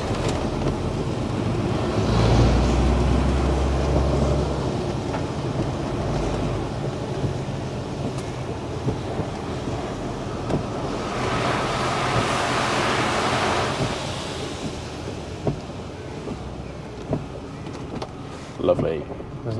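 Lorry cab interior on a wet road: the engine runs steadily under tyre noise from the wet tarmac. A rush of spray hiss swells and fades as an oncoming lorry passes, about eleven to fourteen seconds in.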